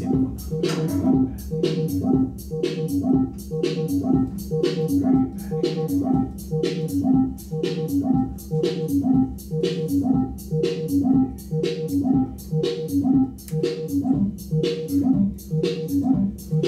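Modular synthesizer playing a looping sequenced electronic pattern: sharp percussive clicks over short pitched notes that each dip in pitch, repeating steadily.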